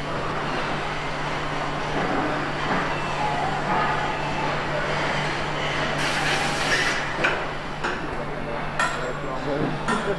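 Engine-assembly workshop noise: a steady machinery hum under continual metal clinks and clatter from parts being handled. A hiss starts about six seconds in and lasts about a second. A few sharp metallic knocks follow near the end.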